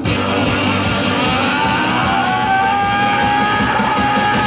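Live Oi! punk band crashing in at full volume with drums and distorted electric guitars, over a high held melody line that glides up about a second in.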